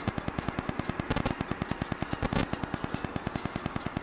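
Rapid, even crackling static from a faulty microphone, about ten clicks a second.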